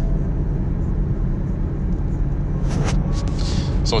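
A steady low rumble of background noise, with a faint brief rustle about three seconds in.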